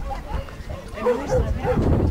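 A dog barking several short times in the second half, over a low rumble.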